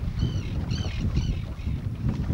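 Wind buffeting the microphone over choppy water beside an open boat, with a bird giving short, arching high calls about two to three times a second.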